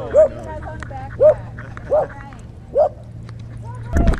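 A dog barking repeatedly, four short barks spaced under a second apart, over a steady low hum.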